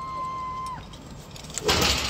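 A woman's short, steady, high-pitched scream as she drops on a rope jump, fading out after about a second. Near the end a brief loud rushing noise.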